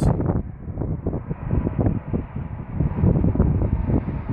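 Wind buffeting the microphone: a low rumble that rises and falls irregularly.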